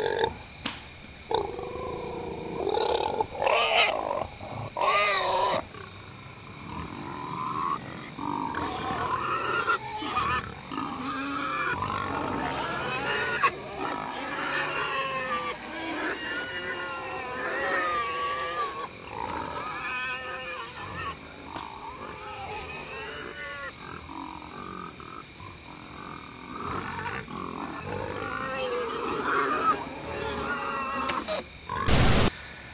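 Pig-like squealing and grunting calls, a running string of pitched cries that rise and fall, with the loudest, highest squeals about three to five seconds in.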